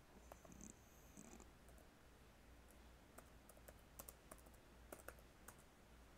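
Faint, irregular keystroke clicks of typing on a computer keyboard, over a low steady hum.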